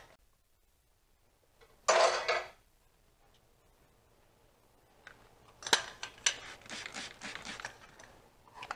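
Metal pots and pans being handled and set down: a short noise about two seconds in, then from about five seconds in a run of clinks and clatter with one sharp clink.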